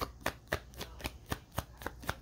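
A tarot deck being overhand-shuffled by hand: a quick, irregular run of light card slaps and clicks as packets of cards drop from one hand onto the other.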